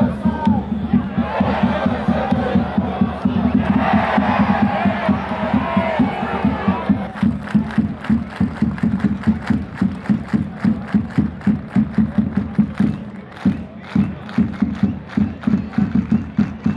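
Football supporters on the terraces chanting together over a steady drum beat. About halfway through the singing drops away, leaving regular beats at about three a second.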